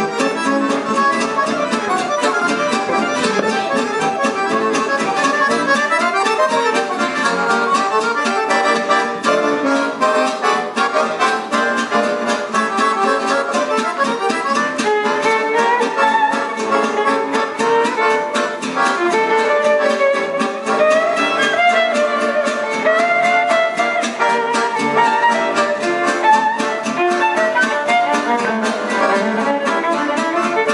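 Live gypsy jazz (jazz manouche) played by an accordion, a violin and an acoustic guitar together, over a steady rhythm.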